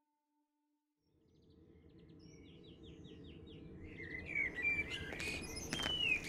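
Outdoor ambience fading in after about a second of silence: small birds singing, first a quick run of five or six falling chirps, then warbling calls, over a steady low rumble that grows louder. A couple of footsteps on gravel come near the end.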